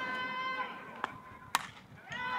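A drawn-out, high-pitched shout fades out in the first half-second. Then come two sharp knocks about half a second apart, the second louder.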